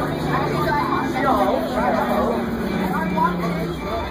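Young passengers talking and chattering inside a moving school bus, over the steady hum of the Crown Supercoach Series 2 bus's engine, which drops in pitch near the end.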